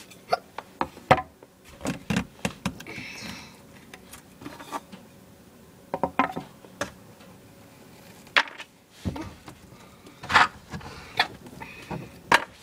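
Small objects being handled and set down close to the microphone: scattered sharp clicks and knocks, a few at a time, with the loudest knocks about two seconds before the end.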